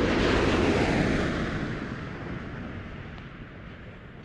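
Space Shuttle Atlantis gliding in unpowered on final approach: a loud rushing of air that is strongest in the first second or so, then fades away.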